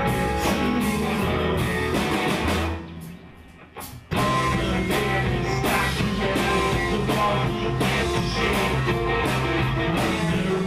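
Live band playing an instrumental passage, an electric guitar to the fore. About three seconds in the music drops away almost to nothing, and the full band comes back in about a second later.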